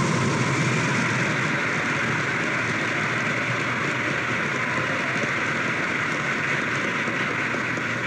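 Live audience applauding: steady, even clapping after the end of a recited poem.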